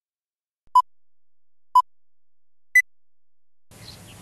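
Three short electronic beeps one second apart, the first two at one pitch and the third an octave higher, like a countdown pip sequence; music starts just before the end.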